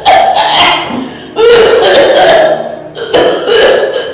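A woman crying out in pain: three long, loud, wavering screams in quick succession.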